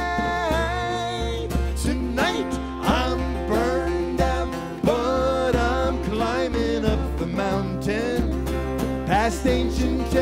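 Live acoustic folk-country song: two steel-string acoustic guitars playing over a djembe hand-drum beat, with pitched lines bending through the melody.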